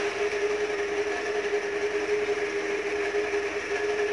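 A pot of pork sinigang at a full boil under a glass lid, giving a steady, even hiss with a constant humming tone underneath.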